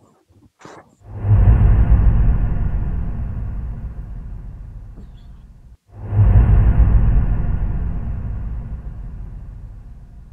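A downloaded stock sound effect for a logo reveal, played back twice: each time a sudden deep, rumbling hit starts and fades away over about four and a half seconds, once about a second in and again just before halfway.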